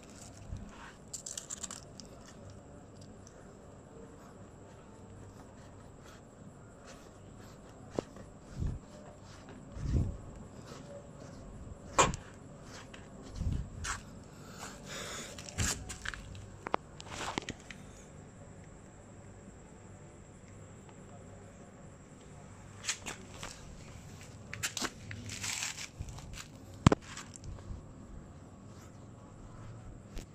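Irregular handling noise: cloth rustling and scuffing on a concrete floor, with scattered low thumps and a few sharp clicks, the loudest click near the end.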